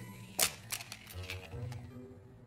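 Cartoon sound effects: one sharp click, then a few lighter clicks, and a faint low tone near the end.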